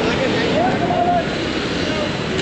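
Motorcycle running at low speed through street traffic, a steady engine and road noise with wind on the helmet microphone.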